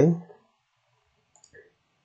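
The end of a spoken "okay?" at the very start, then near silence broken by a couple of faint computer-mouse clicks about one and a half seconds in.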